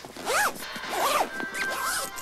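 Zip on a fabric sports bag being pulled shut in three quick strokes, each one rising and falling in pitch.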